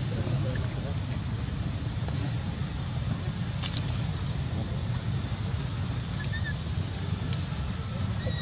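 A steady low rumble runs throughout, with a couple of sharp short clicks, one midway and one near the end.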